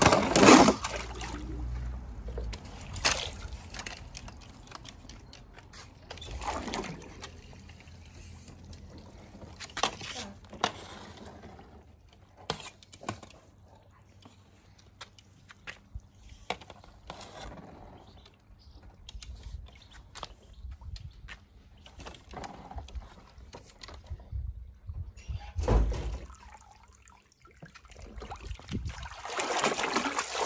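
Water splashing and sloshing in a swimming pool as small die-cast toy cars drop in, with many short clicks and knocks scattered through. Near the end a pool skimmer net is swept through the water in a rising wash of sloshing.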